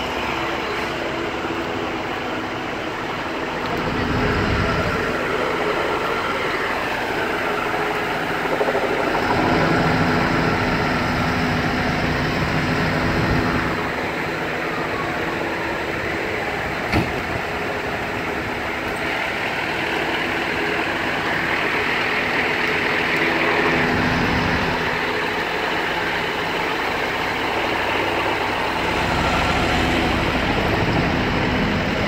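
Parked FDNY ambulances and a rescue truck with their engines idling, a steady heavy engine hum, with one sharp click a little past halfway.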